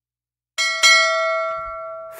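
A bell chime, likely an editing sound effect, struck twice in quick succession about half a second in. Its ringing tone fades slowly.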